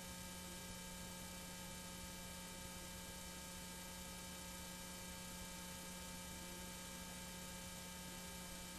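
Faint, steady electrical hum with a light hiss from playback of a blank stretch of old videotape: a low tone with fainter higher tones above it, unchanging throughout.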